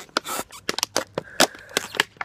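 Clear plastic bottle crinkling and crackling in the hands as it is squeezed and pulled open at a split in its side, a rapid run of sharp cracks.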